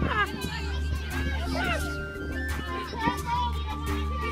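Children's high-pitched voices calling out together over background music with a steady bass line.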